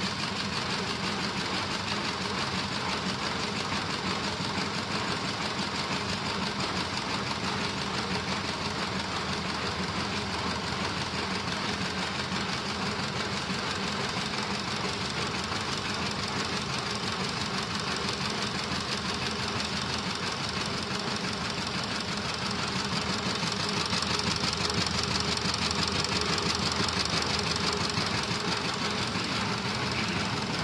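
Vibration test machine running steadily, shaking a taxi roof LED display sign, with a fast, even buzz throughout; it gets a little louder about three-quarters of the way through.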